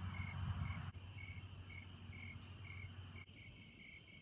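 Crickets chirping outdoors, one with a regular chirp repeating a little over twice a second over a higher trill. A low rumble sits under them during the first second.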